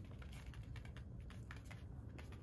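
A Maltese's claws clicking on a hard floor as it trots: a scatter of light, irregular ticks over a low, steady room hum.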